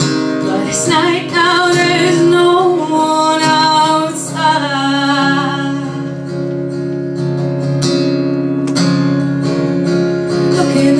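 Acoustic guitar strummed steadily under a woman's sung melody. The voice wavers and is strongest in the first half; after that the guitar chords carry on more on their own.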